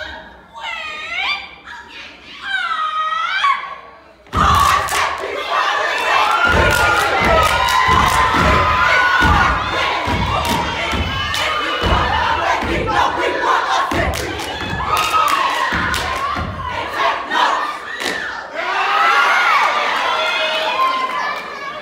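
A shouted chant from a step team, then from about four seconds in the stomps and claps of their step routine under loud audience cheering and screaming.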